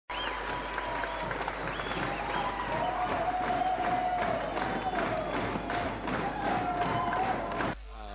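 Audience applauding, with voices calling out over the clapping; it cuts off suddenly near the end.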